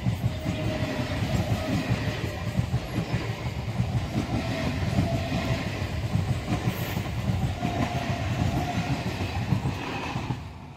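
Eastern Railway electric multiple unit (EMU) local train running past close by, its wheels clattering continuously over the rails, with a faint wavering whine above the clatter.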